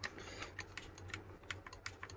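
Faint, irregular clicks of a long screwdriver working a screw inside a hammer drill's plastic gearbox housing.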